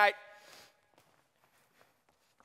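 A woman's voice finishing the word "night", ringing briefly in a large hall, then faint, scattered footsteps on a wooden stage floor as she walks away.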